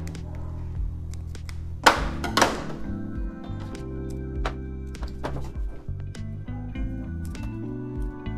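Background music over scissors snipping a rope of pulled coconut candy into small pieces. The snips come as sharp clicks, the two loudest close together about two seconds in and fainter ones after.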